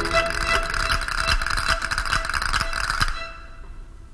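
Orchestral zarzuela music: a loud, full passage ends about three seconds in, leaving a brief quieter moment.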